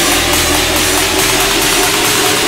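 A riddim dubstep track in a build-up section: a dense, gritty synth noise wash over a held mid tone, the deep bass falling away about halfway through.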